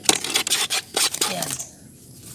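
A burst of rapid, irregular clattering and rustling as a pigeon is grabbed by hand, dying away about a second and a half in.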